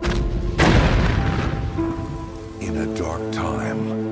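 Opening of a film trailer's soundtrack: a loud boom about half a second in that dies away over about a second, then held music notes.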